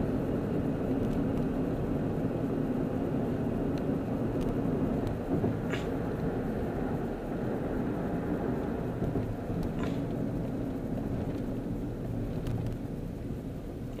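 Steady road and engine rumble inside a moving car's cabin, easing off slightly over the second half, with a couple of faint ticks.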